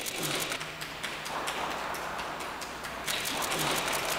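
Press photographers' camera shutters clicking rapidly and irregularly over a steady hiss of room noise.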